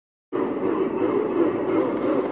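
Sound effect of an animated logo intro: a steady, wavering drone that starts about a third of a second in, after silence.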